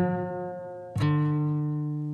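Short intro jingle on guitar: a ringing chord fades, then a final note is plucked about a second in and left to ring out.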